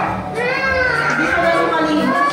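A high-pitched voice, like a child's, with long drawn-out gliding notes, over a steady low hum.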